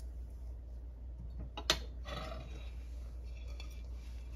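A long metal spoon stirring beans and liquid in a stainless steel stockpot, with one sharp clink of metal on the pot a little under two seconds in, over a low steady hum.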